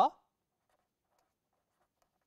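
The end of a spoken word right at the start, then faint scratching of a pen writing on paper.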